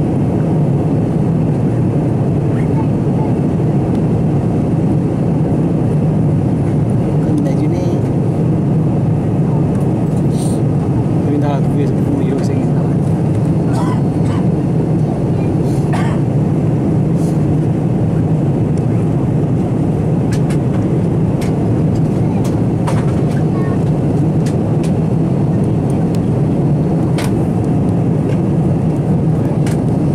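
Jet airliner cabin noise in flight: engines and airflow make a constant low drone, with a few faint clicks.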